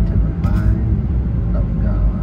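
Steady low road and engine rumble inside the cabin of a car moving at highway speed, with a car radio voice faint underneath.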